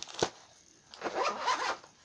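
Zipper on a zip-around DVD wallet case being run: a sharp click just after the start, then a rasping zip pull lasting most of a second.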